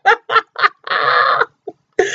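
A woman laughing: a few short bursts of laughter, then a longer breathy laugh about a second in.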